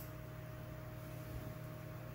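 Faint steady hum of a desktop PC running, a low drone with a thin steady whine over it.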